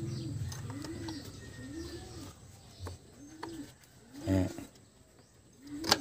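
A bird cooing in a regular series of short, low calls, about one a second, over a low hum that fades out during the first two seconds.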